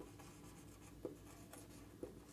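Faint scratching of a marker pen writing on a whiteboard, in short strokes, with a light tap about a second in.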